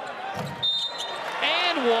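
Basketball play on a hardwood court, with short impacts of the ball and players under the basket. A brief high sneaker squeak comes a little past halfway through.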